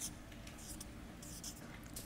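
Felt-tip marker drawing on flipchart paper: a few short, faint scratching strokes.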